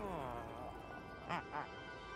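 Cartoon penguin characters giving short squawking calls over a soft music score: a falling squawk at the start, then two quick short squawks in a row just past the middle.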